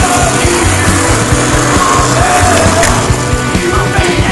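Loud rock music with a singer, guitars and driving drums, the soundtrack laid over the skate footage.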